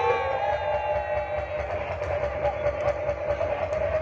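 Loud DJ music through a PA: one steady high note held for the whole four seconds over pulsing bass, with crowd noise underneath.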